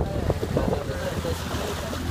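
A small open motorboat under way: a steady low motor hum with wind buffeting the microphone and the rush of water around the hull.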